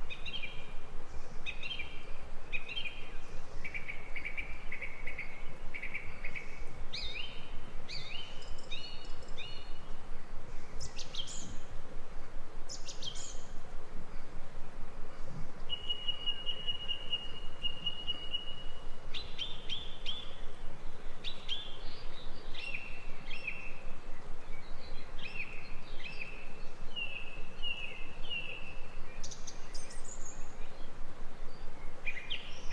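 Garden songbirds singing and calling: series of short repeated chirps and quick downward-sweeping notes, with one steady held whistle about halfway through, over a constant background hiss.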